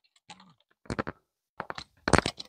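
A few faint, short clicks in three small clusters, with quiet between them.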